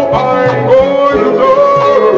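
An oldies soul record playing: a held, gently sliding melody line, likely sung, over a bass line and steady drum hits.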